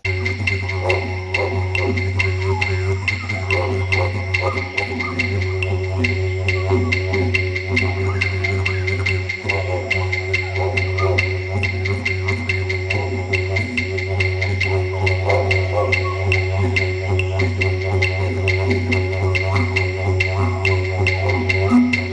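Didgeridoo music: a steady low drone with shifting overtones, over a light regular tapping beat.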